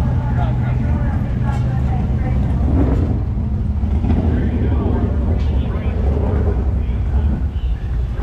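Steady low engine drone from race cars running, with indistinct voices over it.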